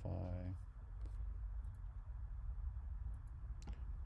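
Faint computer mouse clicks, a few scattered ones and one sharper click near the end, over a steady low hum.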